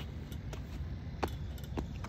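Basketball bouncing on an outdoor hard court: four short knocks about half a second apart, over a low steady outdoor rumble.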